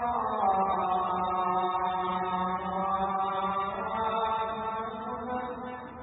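A man's voice chanting a long melodic line, holding drawn-out notes that slide slowly in pitch, amplified through a microphone; it fades away near the end.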